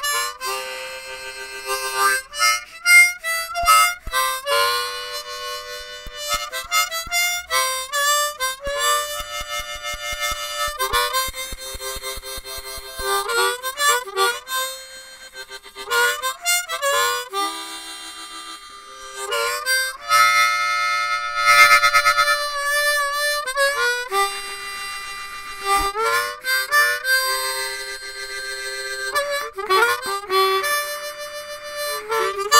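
Blues harmonica played solo, in short phrases with notes bent so they slide in pitch, separated by brief breaks.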